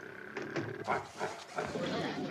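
A man snoring, a run of short, irregular snorts from about half a second in as he is startled awake.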